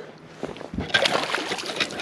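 A hooked largemouth bass splashing at the water's surface beside the boat as it is brought to a landing net, the splashing starting about a second in.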